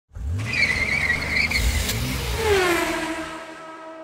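Race car going by with a tyre squeal in the first second and a half, then its engine note falling in pitch, levelling off and getting quieter.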